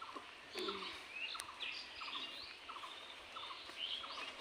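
Birds calling faintly in woodland: short chirps repeated again and again, some lower and some higher, over a quiet background hiss, with one or two light clicks.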